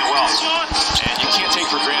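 A basketball being dribbled on a hardwood court: a few quick bounces about a second in, over ongoing arena background sound.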